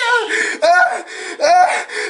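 A man's loud, anguished cries: three drawn-out yells, falling in pitch, in a small room.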